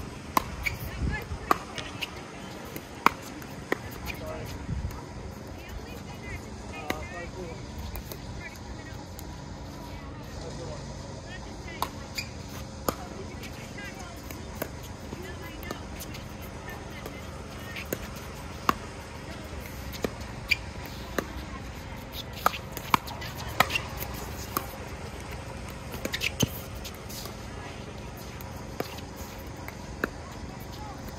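Pickleball rallies: paddles striking a hard plastic ball, sharp single pops coming in runs about half a second to a second apart, thickest in the second half.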